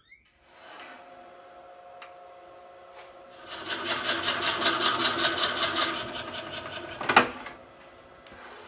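Wood lathe running with a steady hum and a high whine; from about three and a half seconds in, a drill bit in the tailstock chuck bores into the end of the spinning wooden blank, a louder pulsing cutting noise. It ends in a sharp knock about seven seconds in, and the lathe runs on alone.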